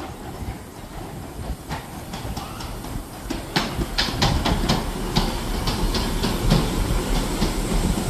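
Miniature 15-inch gauge steam locomotive and its train running into the station, growing louder as it approaches. Over a low rumble, a series of sharp clicks and clatters thickens from about three and a half seconds in.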